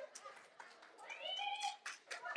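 Faint sounds from a congregation: a few light clicks or claps, and about a second in one short, high-pitched, drawn-out voice calling out.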